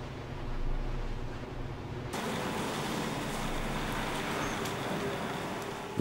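Steady background ambience with no clear event: a low hum at first, changing suddenly about two seconds in to a broader hiss with a few faint ticks.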